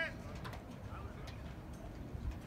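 Steady low outdoor background rumble with a few faint ticks. The tail of a short, high-pitched call ends right at the start.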